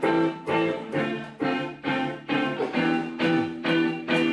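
Electric guitar strumming chords in a steady rhythm, about two strums a second, each chord ringing and fading before the next: the opening of a song.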